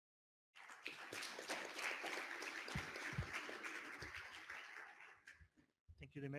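Audience applauding, starting about half a second in and dying away near the end.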